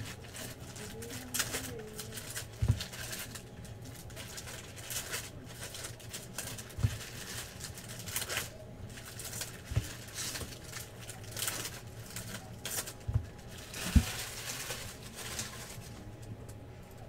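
Trading-card pack wrappers crinkling and tearing as packs are opened, with cards rustling as they are handled. A few soft knocks, about five spread through, as cards are set down on a stack on the table.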